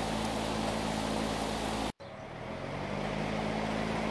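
Electric fan running steadily, a low hum under a broad rush of air as it blows across a model sail. About halfway through the sound cuts out suddenly, then comes back and builds up again over a second or so.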